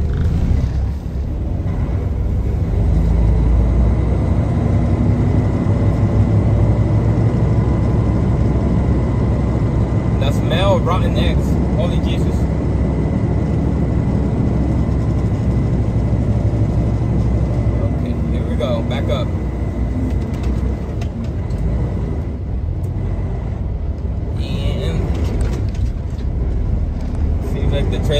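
Semi-truck engine running at low speed under a heavy load, heard from inside the cab as a steady low drone, with a faint steady high whine over it.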